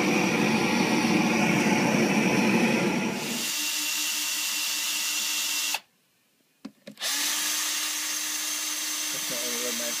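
A loud, steady, rushing roar for the first three seconds. It gives way to a cordless drill driving screws into a wooden box in two steady whirring runs, the first about two seconds long. After a brief stop with a couple of clicks, the second run carries on through the end.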